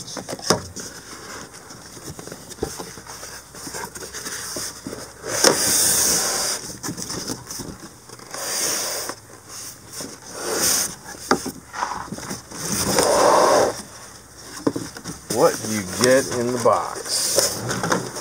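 Cardboard box and styrofoam packing scraping and rustling in irregular bursts as a boxed trolling motor is slid out. A man's voice is heard briefly near the end.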